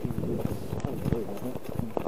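A bicycle riding over rough, cracked sea ice: the tyres crunch and rumble, and the bike and camera mount rattle with irregular knocks as it jolts over the bumps.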